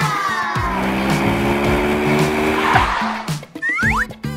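A racing-car sound effect, an engine note with a tyre screech, over cheerful children's background music; it swells about a second in and cuts off just before the end.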